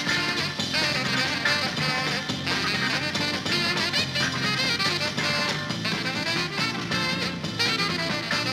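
Jazz-rock band playing: a saxophone leads with a wavering melody over busy drums, cymbals and guitar.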